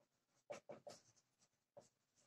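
Faint strokes of a marker on a whiteboard as a word is written: three quick strokes close together about half a second in, then one more near the end.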